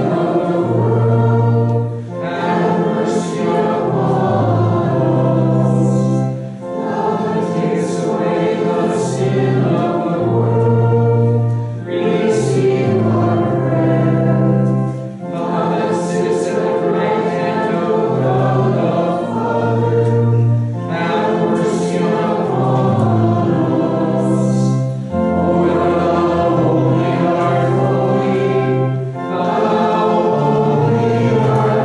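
Congregation singing a hymn together over an accompaniment holding sustained low notes, line by line, with a brief pause between phrases every few seconds.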